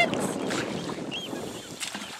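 Rushing noise of water moving around a swimming Newfoundland dog and a wading handler, mixed with wind on the microphone, fading over the two seconds.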